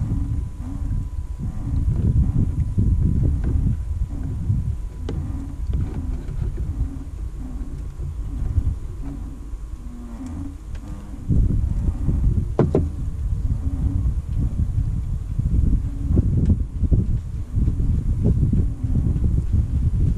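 Wind buffeting the microphone: a low, uneven rumble that swells and dips, with a few sharp clicks of small metal parts being handled.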